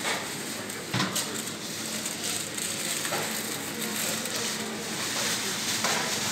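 Steady hiss of supermarket background noise with a faint low hum and a couple of soft knocks, about one second and three seconds in.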